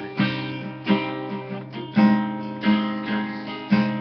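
Acoustic guitar strumming chords, with a strong stroke roughly once a second and the chords ringing between strokes.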